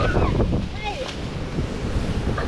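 Gusty wind buffeting the microphone, with surf washing on the shore behind it.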